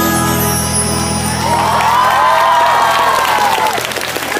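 The song's closing chord rings out from the concert sound system, and an audience starts cheering a second and a half in.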